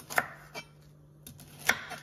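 Kitchen knife slicing Brussels sprouts on a wooden cutting board: two sharp cuts about a second and a half apart, the blade knocking on the board, with a lighter tap between them.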